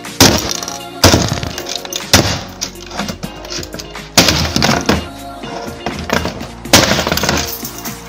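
Plastic computer keyboard and mouse being smashed with hard blows, about five unevenly spaced crashing strikes. Music plays underneath.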